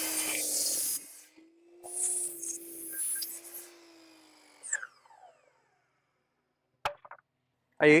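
Sliding compound miter saw cutting pressure-treated lumber: one cut finishes about a second in, then a second cut of about two seconds with a steady motor hum and the blade's hiss through the wood, dying away after. A single click comes near the end.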